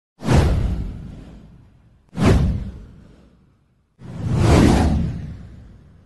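Three whoosh sound effects of a title animation, about two seconds apart, each swelling quickly and fading away; the third swells a little more slowly.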